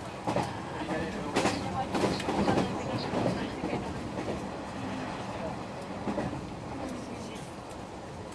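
Interior of a 117 series electric train running: the wheels clack over the rails several times in the first few seconds, over a steady rolling rumble that eases a little toward the end.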